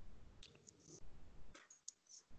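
A quiet pause with a few faint, short clicks, about four of them, over low background noise on the call line.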